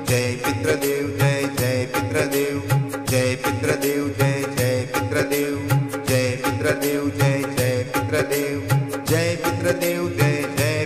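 Hindu devotional mantra music: a repeated chant over a held drone, with a regular beat and light percussion strokes.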